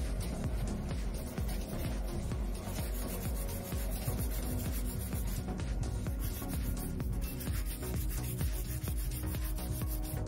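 Hand nail file rasping across the side of a sculpted artificial nail in short, fast strokes, shaping it square, with background music.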